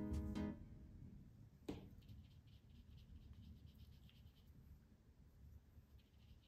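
Background music of plucked notes dies away in the first half-second. A light tap follows, then a run of faint, quick scratching strokes: a paintbrush scrubbing paint on watercolor paper.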